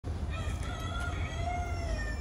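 Rooster crowing: one long, drawn-out crow over a steady low rumble.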